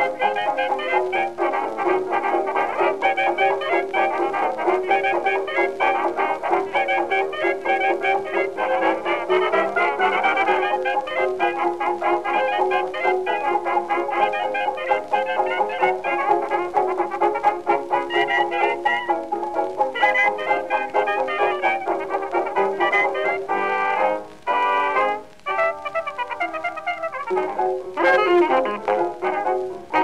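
1927 hot jazz dance band on an early 78 rpm record with a dull, narrow sound: brass and reeds play together over a rhythm section. About a third of the way in there is an upward smear. Near the end the full band drops back for a couple of seconds, leaving a thinner line, before coming in again.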